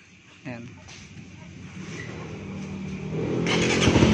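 Suzuki Raider 150 Fi single-cylinder fuel-injected engine being started, catching about half a second in and running, getting steadily louder. It jumps to a louder, higher rev about three and a half seconds in, without popping, which the owner credits to its aftermarket ECU and fuel pump regulator.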